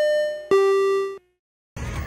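Two-note descending chime sound effect: a higher bell-like note, then a lower one struck about half a second in, both ringing and fading out by just over a second in.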